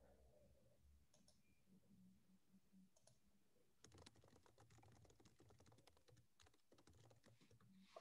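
Near silence, with faint, quick clicks of typing on a computer keyboard that grow more frequent from about four seconds in.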